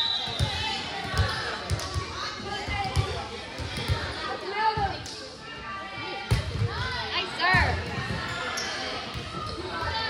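A volleyball being struck during a rally, several sharp thumps a second or more apart, echoing in a large gym over the steady chatter and shouts of spectators.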